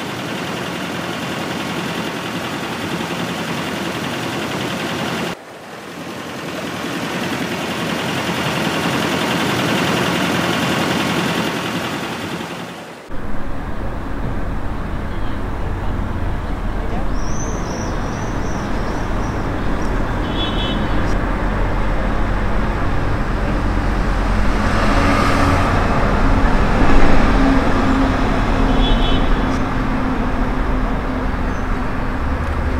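Added sound effects: a steady rush of water from a speeding motorboat's wake, breaking off abruptly about five seconds in and swelling back, then about thirteen seconds in a cut to busy street ambience, a low traffic rumble with a murmur of voices and a couple of short high chirps.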